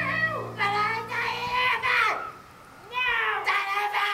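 A person's voice making drawn-out wordless calls that swoop up and down in pitch, with a short pause about halfway through.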